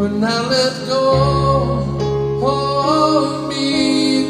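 A man singing a worship song in long held notes over instrumental accompaniment, with a low bass note coming in about a second in.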